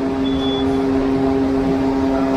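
Steady factory-floor noise on a car assembly line: machinery hum with a constant two-note drone and a short high beep about a third of a second in.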